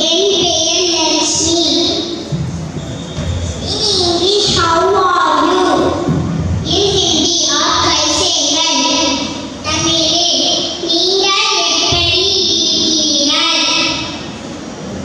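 Young schoolchildren's voices amplified through a microphone in a large hall, taking turns at the mic with a sing-song, chant-like recitation in Tamil, in phrases broken by brief pauses.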